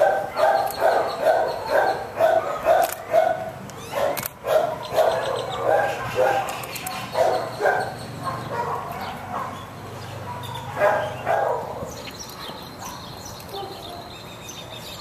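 A dog barking in a fast run of short barks, about three a second, for the first few seconds. The barks then become scattered, with a last pair near the end before they die away.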